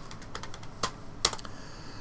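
Typing on a computer keyboard: a quick run of keystroke clicks spelling out a short search word, with a couple of louder clicks near the middle.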